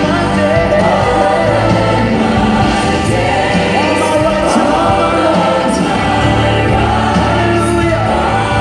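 Gospel choir singing with instrumental accompaniment, sung lines rising and falling over a steady bass.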